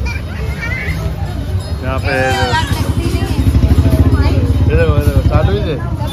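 Several young children's voices calling out and chattering over a steady low rumble, which grows louder about halfway through.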